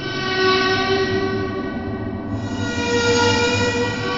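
Electronic dance music: sustained synthesizer chords held over a low bass, brightening as the chord changes a little past two seconds in.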